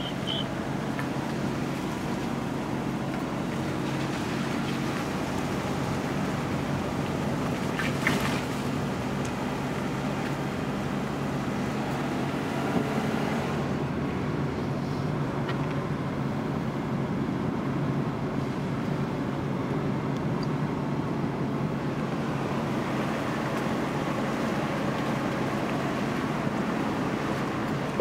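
Steady road and engine noise of a car driving slowly, heard from inside the cabin, with a brief click about eight seconds in.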